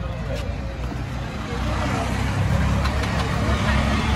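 Busy street noise: a low rumble that grows louder about halfway through, with people talking in the background.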